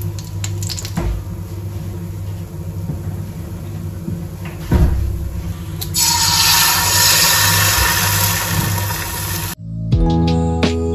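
An egg knocked on the pan rim just before five seconds in, then dropped into hot oil in a frying pan, starting a loud, steady sizzle about six seconds in that cuts off abruptly near the end. Background music plays throughout.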